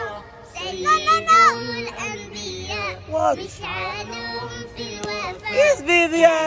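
A child's voice singing over backing music.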